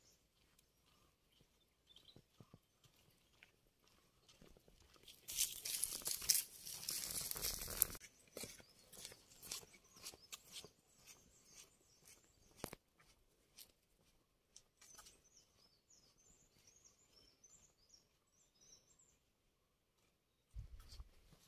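A loud crunching, rustling noise about five seconds in, lasting about three seconds, like a plastic carry bag handled close by, among scattered light footstep clicks. Faint bird chirps near the end.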